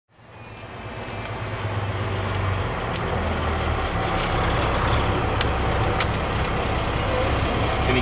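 Truck engine running steadily, heard from inside the cab, fading in over the first second or two, with a few light clicks.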